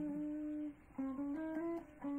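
Solo guitar playing a single-note instrumental melody. A long sustained note cuts off just before the middle, and after a brief gap comes a quick run of short notes stepping up and down in pitch.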